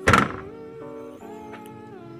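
Toyota Calya's rear tailgate pushed shut, one loud thunk right at the start, over steady background music. It is the test close after the loose latch part's bolts were loosened, shifted and retightened to cure the tailgate not closing tightly.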